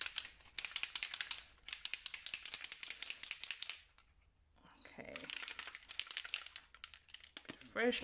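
A Dylusions shimmer spray bottle being shaken hard, the mixing ball inside rattling rapidly. The rattling comes in two spells of about two seconds each, with a short pause between.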